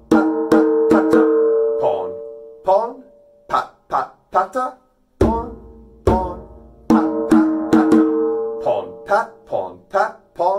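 Djembe played by hand in a repeating pattern of two deep bass tones, then ringing open tones, then a run of quicker strokes, the cycle coming round about every five seconds.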